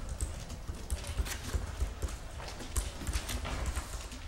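Paper rustling and handling at a meeting table, with irregular light knocks and low thumps on the table.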